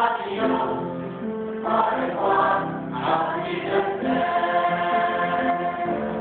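A choir singing a slow song in long held chords; the words "I love" are sung about two seconds in.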